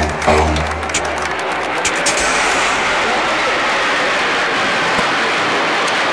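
Music for about the first second, then a steady rushing roar of military jets flying over in formation.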